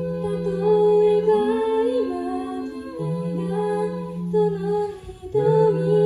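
Five-voice a cappella group singing in close harmony: held chords over a low sung bass note, moving to a new chord about every one and a half seconds, with a short break in the sound near the end.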